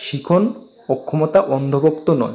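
Speech only: a man's voice reading aloud in Bengali.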